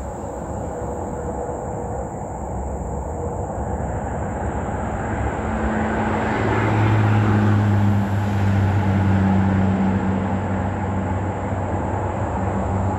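A motor vehicle on the road: a rumble that grows louder about halfway through, joined by a low steady engine hum that holds to the end.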